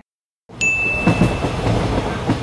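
Sound effect of a moving train: a steady rumble and rattle that starts about half a second in after a brief silence. A thin steady high tone sounds over it for about a second.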